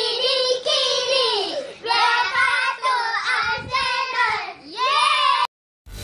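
Children's voices singing a short melodic intro song in several held phrases, which cuts off suddenly near the end; loud music starts right after.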